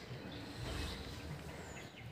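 A few faint bird chirps and one short falling whistle near the end, over a steady low rumble from wind or handling on the microphone.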